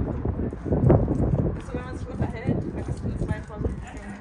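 Voices of people talking in the background, mixed with irregular low knocks and bumps.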